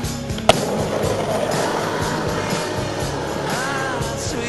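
Skateboard on asphalt: one sharp clack from the board about half a second in, then its wheels rolling, under music with a sung line near the end.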